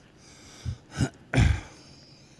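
A man clearing his throat in a few short rasps, the last and loudest about one and a half seconds in.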